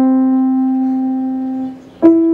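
Digital piano holding a single sustained note that fades slowly and is released near the end, leaving a brief dip before the next note.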